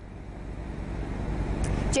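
Road traffic noise on a street, swelling toward the end as a vehicle draws near.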